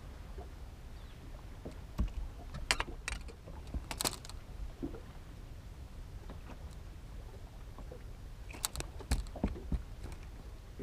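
Scattered sharp clicks and taps as a freshly landed crappie and its hook and lure are handled on a fishing boat's deck, in two clusters, about two to four seconds in and again near the end, over a steady low rumble.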